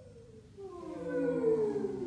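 Several human voices holding a long, wordless vocal sound effect, overlapping and sliding slowly down in pitch together, swelling louder toward the middle.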